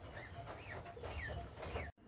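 A chicken clucking: a series of about five short, arched calls over a low background rumble, cut off suddenly just before the end.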